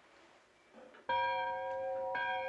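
An alarm bell struck once about a second in, ringing on with a clear, lingering tone: the signal rung from inside the burial vault to call for rescue.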